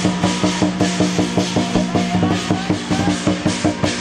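Lion dance percussion: a large drum with clashing cymbals and gongs playing a fast, steady beat of about three to four strikes a second.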